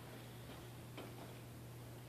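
Quiet indoor room tone: a steady low hum under faint hiss, with one faint click about a second in.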